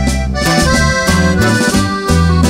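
Accordion-led norteño music from a live corrido recording: the accordion plays held, chord-like notes over a bass line that steps from note to note in a steady rhythm.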